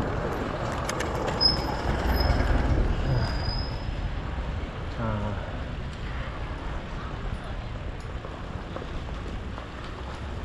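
Steady street noise and wind on the microphone while riding along a city street, with a thin high squeal that comes and goes between about one and a half and three and a half seconds in.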